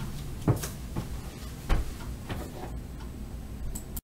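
Footsteps and handling knocks as a person walks up close to the microphone: a few soft thumps, the two loudest about half a second in and a little before two seconds, over a low steady room hum. The sound cuts off abruptly at the end.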